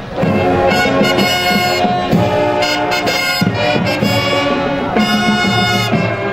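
Marching band playing, its brass instruments sounding held chords.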